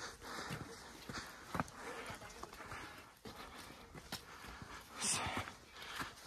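Footsteps on a snow-dusted stone path, faint irregular steps about twice a second, with a short hiss about five seconds in.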